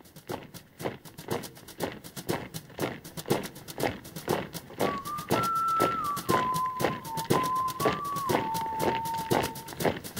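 Marching feet in step, a steady, even tread that grows louder, opening the song. About halfway through, a single clear melody line of a few held notes joins the tread.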